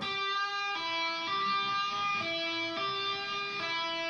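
Electric guitar (Gibson SG) playing a slow run of single ringing notes, each sounded by a pull-off in which the fretting finger pulls the string down rather than lifting off, giving the note its volume.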